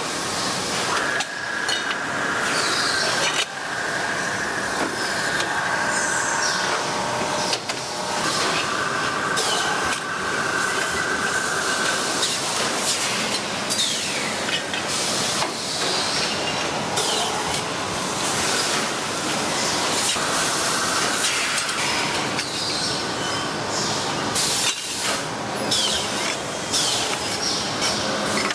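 Stainless steel bottle-forming machinery running: presses and dies shaping the necks of thermos bottle bodies, with a constant hiss and scattered clicks. A high metallic squeal sounds for a few seconds at a time, three times in the first half and once more past the middle.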